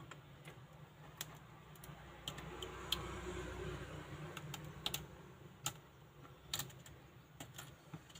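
Irregular light clicks and taps of fingernails picking at and peeling hardened 3D-pen plastic filament off a flat sheet, over a low steady hum.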